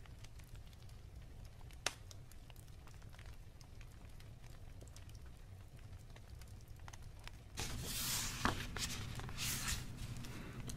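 A paper book page being turned near the end, rustling and crackling for about two seconds. Before it there is only a low room hum and a single click about two seconds in.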